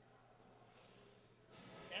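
Near silence with a faint breath drawn in, then a man's voice starting right at the end.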